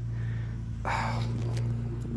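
A person's audible breath, one exhale about a second long near the middle, over a steady low hum.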